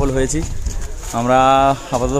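A man's voice talking, holding one long drawn-out vowel at a steady pitch about a second in, over a low rumble of wind on the microphone.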